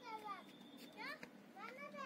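A child's high voice, vocalizing without clear words in short rising and falling sweeps.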